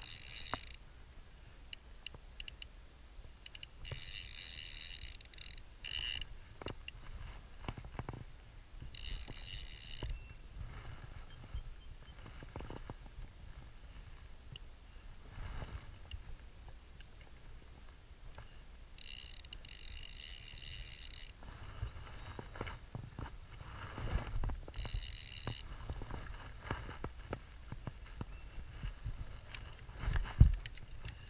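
Click-and-pawl fly reel ratcheting in short buzzing spells of a second or two, about six times, as line goes on or off the spool while a hooked fish is played. Soft knocks from handling the rod come in between.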